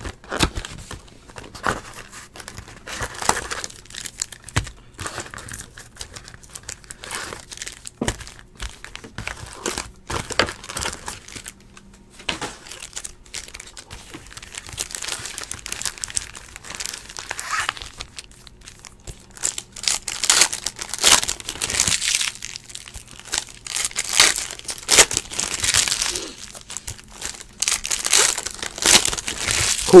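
Foil trading-card pack wrappers crinkling and tearing in the hands as packs are opened, in irregular rustles that grow denser and louder in the last ten seconds or so.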